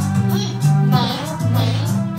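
A children's phonics song: a child's singing voice over a backing track with a bass line that moves every half second or so.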